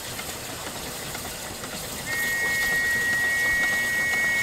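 Narrow-gauge steam locomotive's whistle giving one long, steady two-tone blast, starting about halfway through, over a steady hiss.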